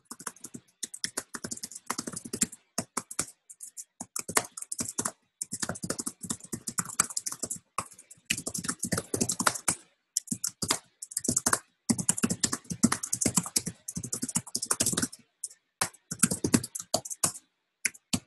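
Typing on a computer keyboard: rapid runs of key clicks broken by brief pauses.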